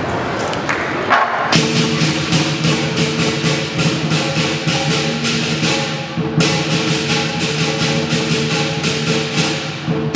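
Lion dance percussion: drum, cymbals and gong starting up about a second and a half in and playing a fast, steady beat of sharp clashes over a ringing low tone. The beat breaks off briefly about six seconds in, then resumes.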